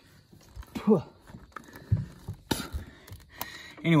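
Scattered clicks and light knocks of hands working stiff hose fittings off a plastic heater/AC part, with a short vocal sound about a second in.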